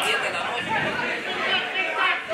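Indistinct chatter of several spectators talking at once, with overlapping voices and no single clear speaker.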